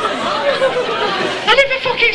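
Indistinct overlapping speech and chatter, with one voice coming through more clearly near the end.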